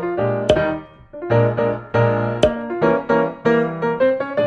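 Piano music, a quick run of notes that each ring and fade, with a sharp short hit about half a second in and another near the middle.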